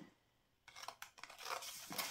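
Scissors snipping a silver foil paper plate: a quick run of short cuts beginning about two-thirds of a second in, after a brief silence.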